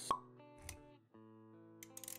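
Sound effects of an animated intro over music: a sharp pop just after the start, a soft low thud about half a second later, then held musical notes with a few light clicks near the end.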